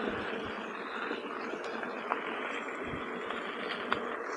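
Electric unicycles rolling along a sandy dirt track: a steady rush of tyre and wind noise, with a faint tick about two seconds in and another near the end.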